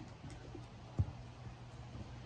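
Quiet outdoor background with a steady low hum and one soft thump about a second in.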